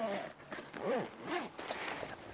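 YKK zipper on a canvas awning bag being pulled closed.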